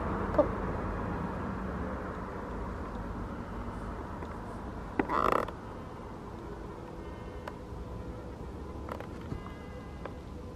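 A steady low background rumble. A woman sighs once about five seconds in, and there is a faint click near the start.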